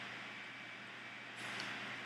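Faint, steady background noise of a large indoor arena, with no music or voice; it grows a little louder about a second and a half in.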